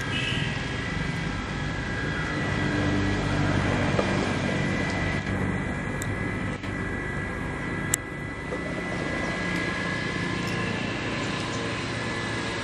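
A steady mechanical drone, like a motor or engine running, with a low hum and a faint high whine. Two short clicks come near the middle.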